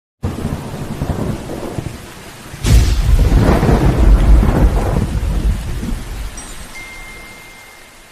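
Thunderstorm sound effect: rain hiss with low rumbling, then a sharp thunderclap about two and a half seconds in that rolls on as a long rumble and slowly fades away.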